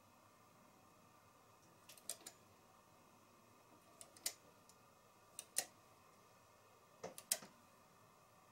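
Light clicks of knitted stitches being popped off a knitting machine's metal latch needles by hand. They come in quick pairs or threes every second or so, over a quiet room.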